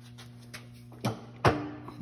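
Steady low hum with a faint tick, then two short, sharp knocks a second and a second and a half in, the second the louder: light handling knocks while a dial test indicator is set up on a manual milling machine.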